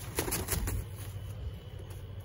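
A rooster held upside down by its legs beating its wings, a quick run of about four flaps in the first second, then quieter.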